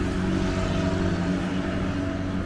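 Street traffic: a vehicle engine running with a steady low hum over the general noise of road traffic.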